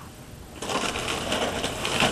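Rustling, crackling noise close to the microphone, starting about half a second in.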